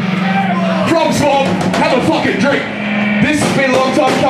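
Live band playing loud in a small venue, with the vocalist shouting into the microphone over amplified guitar and drums, and a low guitar or bass note held for stretches.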